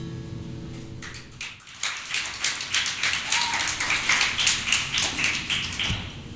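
The last chord of a steel-string acoustic guitar fading out, then a small audience clapping from about a second and a half in, cut off abruptly.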